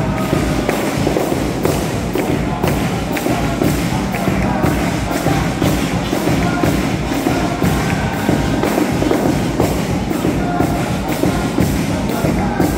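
Carnival comparsa band playing an instrumental passage: several kazoos (carnival pitos) buzz the tune over strummed Spanish guitars and a steady drum beat of about two strokes a second.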